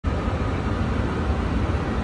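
Steady cockpit background noise on a parked Boeing 747-8 flight deck: an even hum and rush, strongest in the low end, with no breaks.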